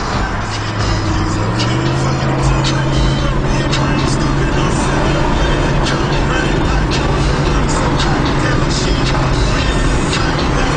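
Car driving on a highway, heard from inside the cabin: steady road and engine noise, the engine note rising as the car speeds up in the first couple of seconds and then holding steady. Music plays underneath, with scattered faint clicks.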